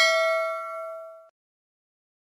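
Subscribe-button animation sound effect: a single bell ding, struck just before, ringing on several steady pitches and fading, then cut off abruptly about a second and a quarter in.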